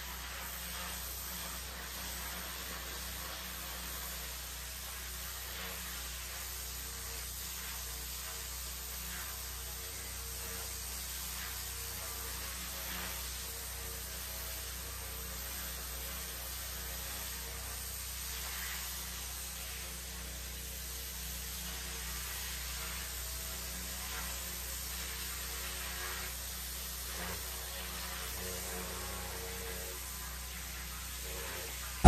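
Steady hiss of pressure-washer spray over the constant low hum of its running engine, with no distinct knocks or changes.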